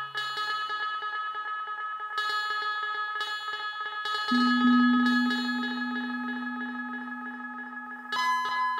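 Generative ambient music from a two-voice Eurorack modular synthesizer with heavy delay: several held tones with repeating echoed notes. A low note enters about four seconds in as the loudest sound, then fades slowly.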